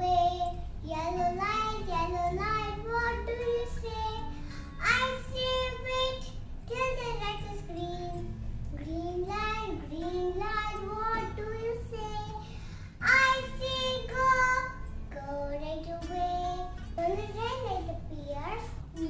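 A young girl singing a children's rhyme, with long held, gliding notes.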